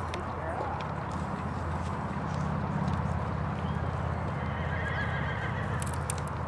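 A horse whinnies over a steady low rumble.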